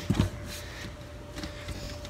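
A short knock about a quarter second in, then a few faint clicks of handling over quiet room tone with a faint steady hum.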